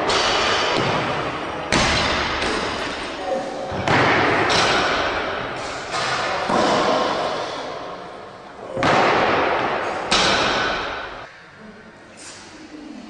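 Loaded barbells with heavy plates dropped onto the lifting platform in a large gym hall: about six loud crashes a second or two apart, each followed by a long echoing decay.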